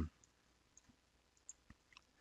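Near silence with three brief faint clicks in the second half, the last near the end.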